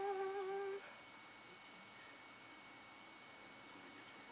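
A woman humming one short, steady held note for under a second at the start, a wordless "mm".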